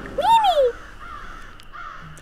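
A single short call, rising and then falling in pitch, lasting about half a second near the start.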